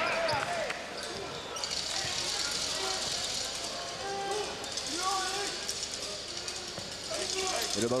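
Basketball arena sound: steady crowd noise and voices from the stands, with a ball being dribbled up the court. A commentator's voice comes in at the very end.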